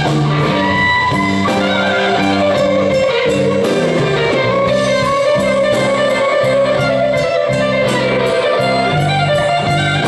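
Live electric blues band playing an instrumental passage: an electric guitar lead over bass and drums, with a steady cymbal beat.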